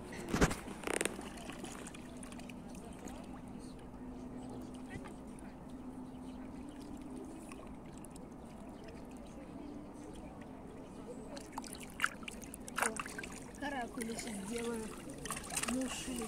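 Small splashes and sloshing of shallow river water stirred by hands: a couple just after the start and a few more near the end, over a faint steady hum.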